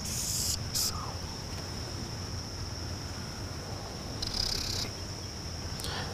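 Insects trilling steadily on one high, even tone, with two short louder bursts of hiss, one at the start and one a little past four seconds in.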